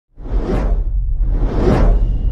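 Two whoosh sound effects about a second apart, each swelling and fading, over a steady deep rumble: the opening transition sounds of an edited video intro.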